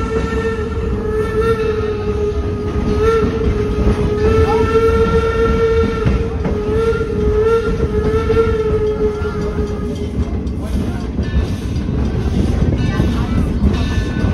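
Train wheels squealing on a curve: a long, steady, slightly wavering high squeal of steel wheel flanges against curved rail over the running rumble of the cars. It dies away about ten seconds in, leaving the rumble and clicking of wheels on the track.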